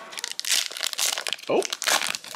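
Wrapper of a 1992 Donruss baseball card pack crinkling as it is torn open and peeled off the cards, a rapid run of small crackles.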